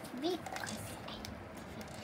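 A child says one short word, then faint room noise with a few soft ticks.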